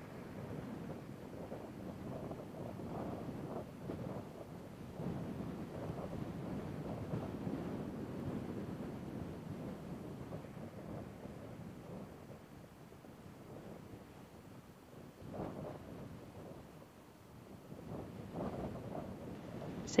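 Faint, low, uneven rumble like wind on an outdoor microphone, with one brief swell about three quarters of the way through.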